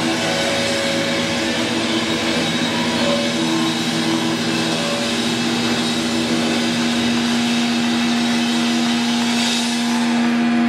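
Distorted electric guitars through stage amplifiers holding a loud, steady droning wall of noise over one sustained low note, the kind of amp feedback drone a rock band holds live.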